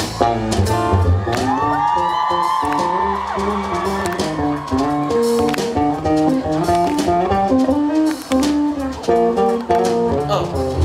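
A live band playing a guitar-led instrumental passage, with a run of picked notes and a bent note about a second in.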